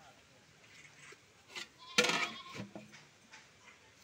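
A goat bleats once, loudly and briefly, about halfway through.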